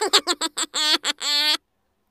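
A man laughing: a quick run of short laughs, then two longer drawn-out ones, stopping suddenly about a second and a half in.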